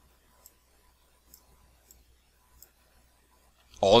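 Faint computer mouse clicks, about half a dozen at irregular intervals, over near-silent room tone; a man's voice starts just before the end.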